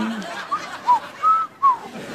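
A man's low hum trails off, then he whistles four short notes of a tune, each bending up and down in pitch.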